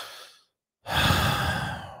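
A man sighing: one long, breathy exhale close to the microphone, starting about a second in and fading away.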